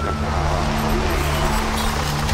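Electronic sci-fi sound design: a steady low drone of several held tones, with a vehicle-like hiss of noise over it.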